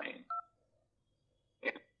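The last syllable of a recorded phone-menu voice, then one short dual-tone keypad beep as the 2 key is pressed to choose option two. A brief short sound follows near the end.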